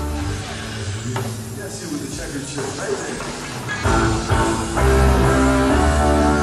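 Live rock band in an audience recording: sustained guitar and keyboard chords over bass thin out about a second in to a sparser passage, then the full band comes back in about four seconds in.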